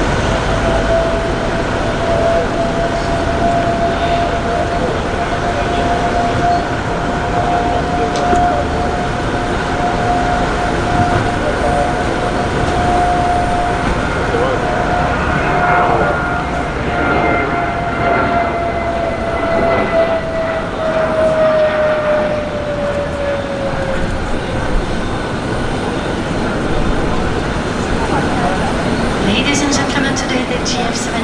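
JF-17 Thunder's single RD-93 turbofan on landing approach with gear down: a steady, loud jet roar carrying a whine that holds its pitch, then falls away over a few seconds as the jet passes.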